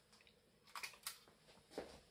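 Near silence with a few faint clicks and rustles, about a second in and again near the end, from hands picking up and handling a plastic scale model car.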